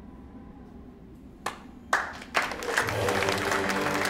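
Hand clapping: two single claps about a second and a half in, then a few people breaking into applause, with music coming in under it near the end.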